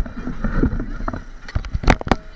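Handling noise from a helmet-mounted action camera as the wearer moves his head: uneven low rumbling and rustling on the camera's microphone, with a couple of sharp knocks near the end.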